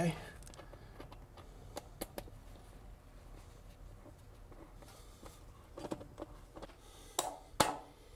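Torque wrench tightening the stainless steel hose clamps on a flexible rubber coupling over cast iron drain pipe: scattered light clicks and scrapes, with two sharper clicks near the end.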